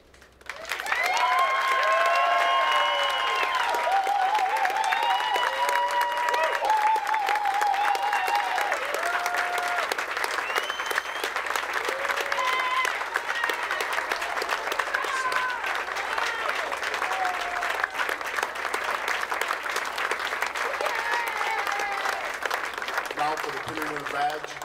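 Crowd applauding, the clapping starting suddenly about a second in and holding steady. Cheering voices and whoops rise over the clapping in the first several seconds.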